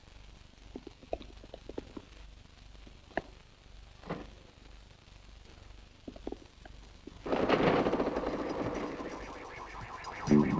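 Scattered light clicks and taps, then about seven seconds in a loud rattling engine noise starts and fades over the next couple of seconds. It is a cartoon sound effect for a veteran open car starting up and pulling away.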